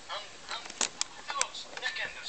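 Audience laughter on a live stand-up comedy recording after a punchline, with a few short sharp cackles and claps.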